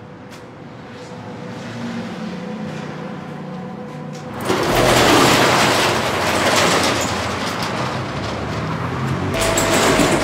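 Metal roller shutter door being pushed up, a loud, dense rattling clatter that starts about four and a half seconds in, eases briefly near the end and then picks up again.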